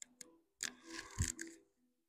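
Faint clicks and a soft rustle with one low thump about a second in as a person shifts her weight on a yoga mat, rising onto hands and knees.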